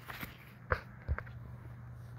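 A few soft, scattered clicks and knocks of handling as a pocketknife is drawn out of its slip pouch, over a faint steady low hum.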